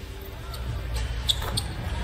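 Live basketball court sound: a ball dribbled on the hardwood floor and a few short high sneaker squeaks about two-thirds of the way in, over a steady low arena rumble.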